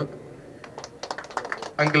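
A scatter of sharp, irregular clicks during a pause in a man's amplified speech, which resumes near the end.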